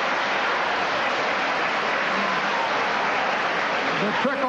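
Large audience applauding steadily, a dense even clatter of many hands clapping.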